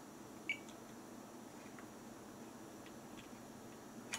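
A short, faint beep about half a second in, from a multimeter whose probes are on a power MOSFET's legs during a component test; otherwise faint steady room hiss.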